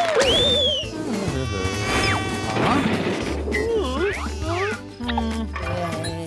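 Cartoon sound effects over a music score with a pulsing bass. A wobbling tone and a whistle-like arc that rises and falls come right at the start, followed by further sliding and wavering whistle-like glides through the rest.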